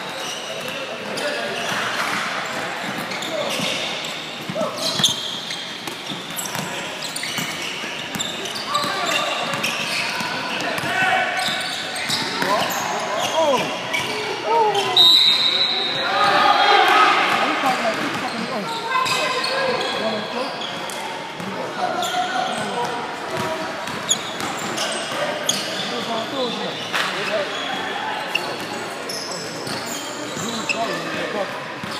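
Indoor basketball game: overlapping shouts and chatter from spectators and players, with a basketball bouncing on the court now and then, and a brief high-pitched squeal about halfway through.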